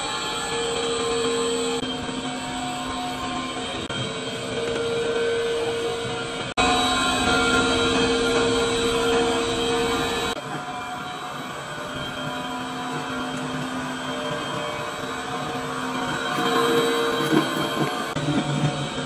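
Electric stirrer motor running steadily with a whine, its shaft mixing PVC powder in a plastic bucket. The sound jumps louder about six and a half seconds in and drops back about ten seconds in.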